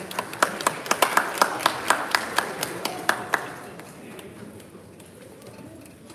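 Audience applause, with one person clapping close by at about four claps a second. The claps stop about three and a half seconds in, leaving crowd murmur.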